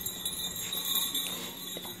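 Small jingle bell on a dog's collar jingling steadily as the dog walks about.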